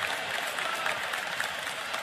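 Steady applause from a group of people clapping, with a few voices mixed in.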